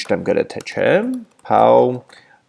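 Keystrokes on a computer keyboard as a line of code is typed, with a man's voice talking over them.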